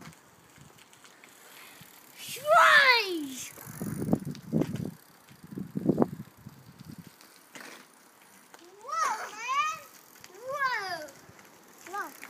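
A young child's wordless high-pitched calls: one long falling cry about two and a half seconds in, and two shorter rising-and-falling cries near the end, with low rumbles in between.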